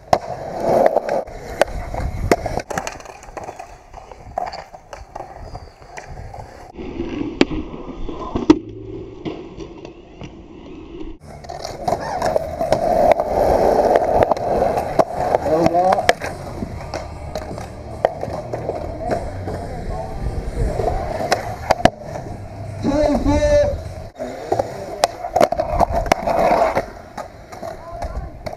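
Skateboard wheels rolling on concrete, broken by many sharp clacks of the board popping and landing as tricks are done on ledges and banks.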